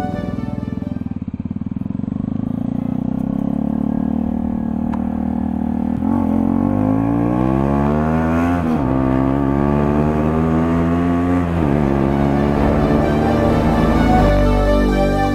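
Motorcycle engine under way. It runs at low revs at first, then its pitch climbs steadily as the bike accelerates, drops sharply at an upshift, climbs again and drops at a second upshift near the end.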